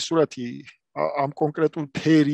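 Only speech: a man talking, with a brief pause a little under a second in.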